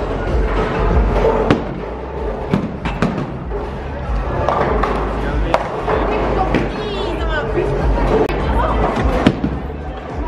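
Bowling alley noise: background music and voices, with several sharp knocks and clatters of balls and pins on the lanes.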